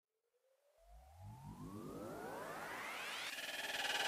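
Synthesized rising sweep in electronic background music. It climbs steadily in pitch and grows louder for about three seconds, and near the end steadier tones join in.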